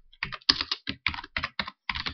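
Typing on a computer keyboard: a quick run of separate keystrokes, with a short pause near the end.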